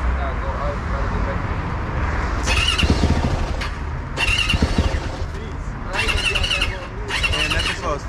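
A motorcycle engine sounding in four short bursts, each under a second, over a steady low rumble.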